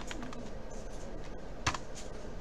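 Computer keyboard being typed on: a few separate keystroke clicks, the loudest near the end.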